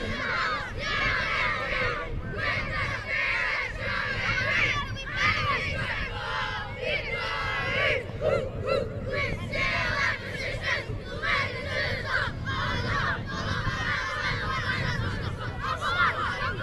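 A team of young boys shouting a chant together in unison, phrase after phrase with short breaks, in the manner of a footy team's club song.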